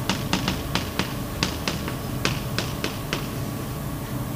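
Chalk clicking against a blackboard as words are written: an irregular run of sharp little taps, about four or five a second.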